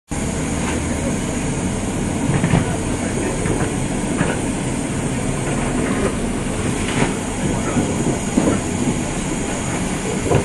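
Steady rumble inside the carriage of a moving Virgin Voyager diesel train, with irregular clacks as the wheels cross rail joints.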